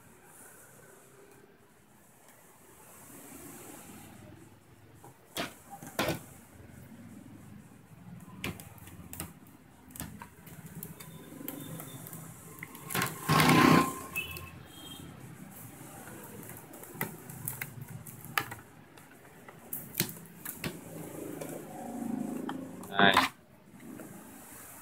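Stiff clear plastic blister packaging handled and cut open with scissors: scattered crackles and clicks of the plastic, with the loudest, longest crunch of cutting about halfway through.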